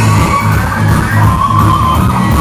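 Live blues-rock band playing loudly: electric guitar lead over electric bass and a steady drum beat, with a held guitar note that bends upward about halfway through.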